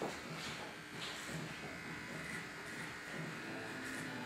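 Corded electric hair clippers running with a steady buzz as they are passed over the side and back of a woman's head, cutting her hair close.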